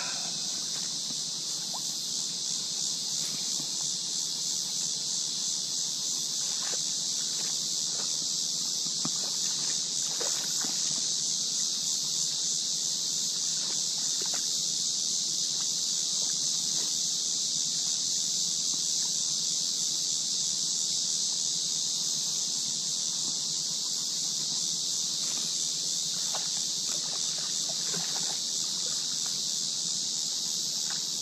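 Cicadas droning in a steady, high-pitched chorus with a fast pulsing buzz, and a few faint clicks.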